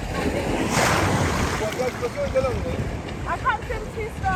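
Shallow sea water sloshing and splashing around a swimming horse, with a brief louder splash about a second in, over steady wind noise on the microphone.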